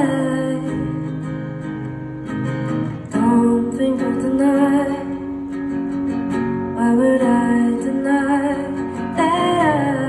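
Acoustic guitar strummed steadily, with a woman singing a melody over it in several phrases.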